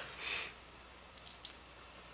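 A brief rustle of a hand moving over the work surface, then a quick cluster of three or four light clicks from small screws and nuts being handled, a little past the middle.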